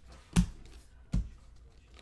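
Two sharp taps, about three-quarters of a second apart, of trading cards being set down onto a stack of cards on a desk. The first tap is the louder.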